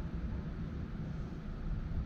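Wind buffeting the microphone outdoors: a steady, uneven low rumble with a faint hiss above it.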